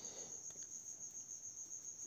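A faint, steady high-pitched tone that pulses slightly, over low background hiss.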